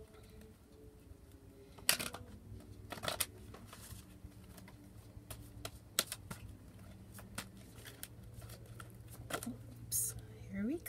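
A deck of Mana Cards oracle cards being shuffled by hand off camera: irregular soft flicks and rustles, with a few sharper snaps about two, three and six seconds in.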